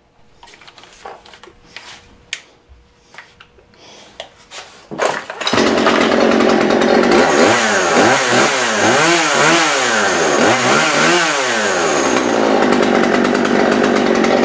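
A Poulan Pro 46cc two-stroke chainsaw: a few light clicks and knocks, then about five seconds in the engine starts and runs loudly. It is revved up and down several times and then held at a steady speed, with the freshly refitted carburetor and new fuel line working.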